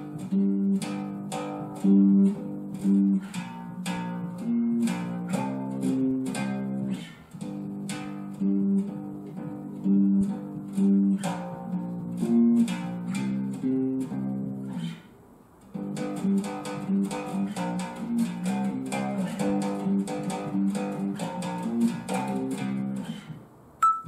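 Fender electric bass playing a slow octave pattern: the low root note plucked twice, then the same note an octave higher once, repeated as the shape moves up the neck. The phrase runs through twice, with a short break about fifteen seconds in.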